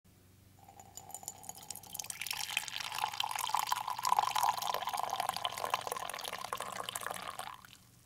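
Liquid pouring in a steady stream into a ceramic mug, its pitch rising slowly as the mug fills; the pour fades and stops just before the end.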